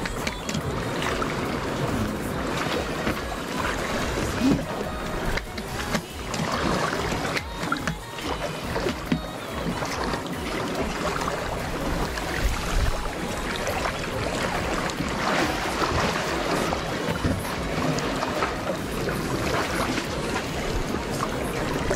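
Sea water sloshing and lapping against concrete tetrapods in an uneven, continuous wash, with background music under it.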